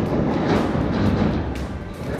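Bowling pins clattering and rattling down after a ball strikes them on a string pinsetter lane, the crash dying away over the two seconds, with background music underneath.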